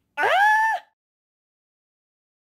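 A single short high-pitched call, gliding up in pitch and then held briefly before stopping.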